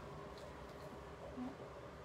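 Quiet indoor room tone: a faint steady hum, with one brief soft sound about one and a half seconds in.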